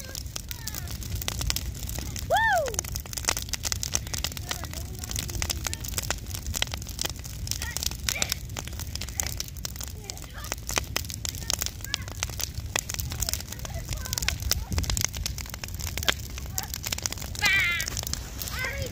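Large bonfire of wooden pallets and branches burning hard, with dense, continual crackling and popping over a low rumble of flames. A single voice-like call glides down in pitch about two and a half seconds in, and a wavering voice comes in near the end.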